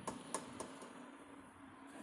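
A quiet pause: faint room tone with two short, faint clicks about a third and two-thirds of a second in.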